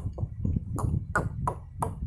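A rapid series of short pings, several a second, each dropping in pitch, over a low steady rumble.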